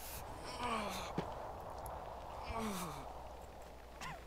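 A person sighing twice, each a short groan that falls in pitch, about two seconds apart.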